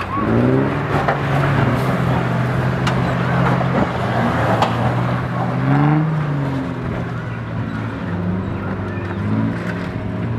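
Toyota FJ Cruiser's 4.0-litre V6 engine pulling under load on a steep off-road track, the revs rising about half a second in and again around six seconds, with a few sharp knocks in between.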